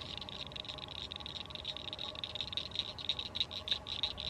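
Faint outdoor ambience: a steady chorus of rapid, high-pitched chirping pulses over a low rumble.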